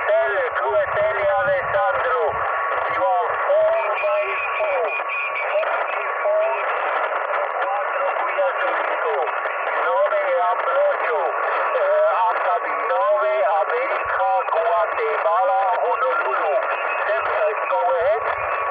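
A calling amateur radio station's voice received through a Yaesu FT-817 transceiver's speaker: thin, narrow-band sideband speech with a steady whistle running through it and other signals overlapping.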